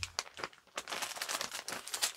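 Packaging crinkling and rustling as it is handled, a quick irregular run of small crackles.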